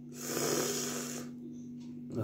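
A single loud, breathy exhale lasting about a second, over a steady low hum.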